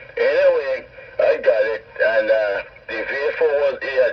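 Speech only: a man talking in a thin, narrow-band voice, as heard over a radio.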